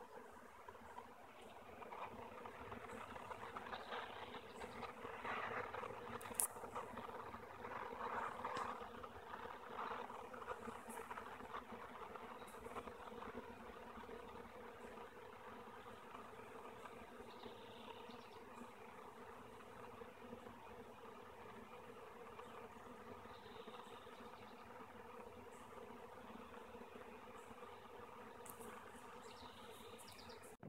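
Faint steady hum of a honey bee swarm, many bees flying around a swarm trap as they settle onto it. The hum is a little louder over the first ten seconds.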